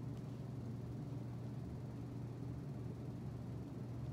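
Steady low hum with a faint even hiss: the background noise of the room, with no other sound.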